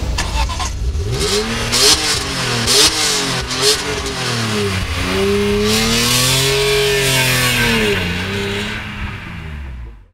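BMW M3 E46's naturally aspirated 3.2-litre straight-six free-revved through its quad exhaust with the car standing still. Three quick blips of the throttle come from about a second in, then one longer rev that climbs, holds and falls back, before the sound fades out at the end.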